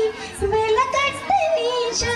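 A woman singing a melody into a microphone, holding long notes that step up and down in pitch.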